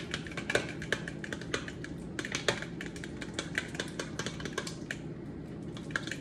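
A utensil stirring a thick mix of yogurt, mashed banana and peanut butter in a mixing bowl, clicking and scraping against the bowl several times a second in an uneven rhythm.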